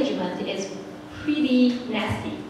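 A woman speaking into a handheld microphone; speech only.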